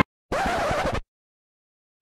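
A short record-scratch sound effect of about two-thirds of a second, coming just after the music stops dead.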